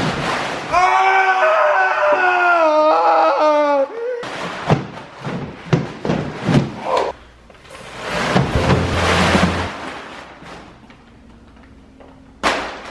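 A man yelling as he slides down a tarp-covered staircase: one long yell falling slowly in pitch over the first few seconds. It is followed by a scatter of thuds and knocks as he lands, and rustling of the plastic tarp.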